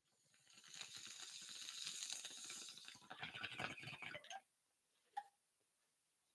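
Glass bong bubbling as smoke is drawn through its water. The bubbling builds over the first second, turns heavier and deeper from about three seconds in, and cuts off abruptly at about four and a half seconds. A single short click follows.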